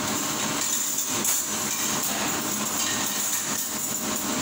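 Steady machine noise with a hiss, typical of a commercial kitchen's dish area, with faint clinks of metal cutlery being picked out of linens.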